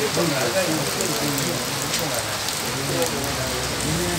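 Steady rain falling on a wet, puddled street, with people talking in the background.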